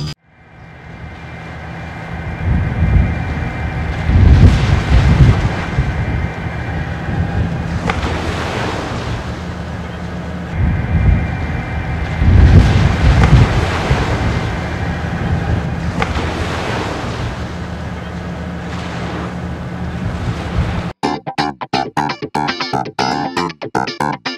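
Sea waves washing in repeated surges over a steady low drone. About 21 seconds in it cuts to rhythmic guitar music.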